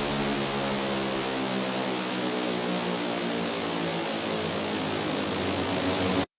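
Electronic dance music breakdown: a held synth chord under a wash of rushing noise, with the bass dropping away about two seconds in.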